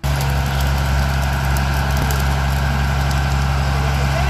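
A truck engine idling steadily: an even low hum with a constant hiss over it.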